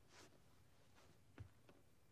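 Near silence: faint rustling and a few soft knocks as a person gets up from sitting, the loudest a low thump about a second and a half in.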